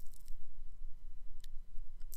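A low steady hum with a single sharp click about one and a half seconds in.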